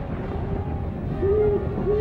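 An owl hooting twice, two short arching hoots in the second half, over a low rumble.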